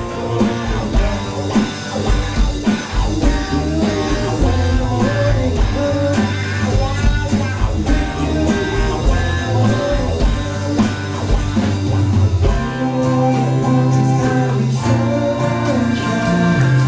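Live power pop band playing: a sung vocal over electric and acoustic guitars, bass, keyboard and a steady drum beat. About three-quarters of the way in the bass moves to long held notes.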